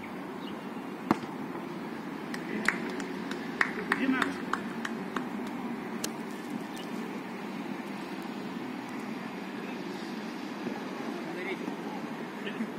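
Football being kicked on an artificial-turf pitch: sharp knocks, the loudest about a second in, then a cluster of several more between about two and five seconds, over steady outdoor background noise.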